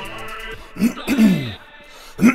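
Electronic intro music cutting off about half a second in, then a man's voice making two short wordless sounds, each falling in pitch.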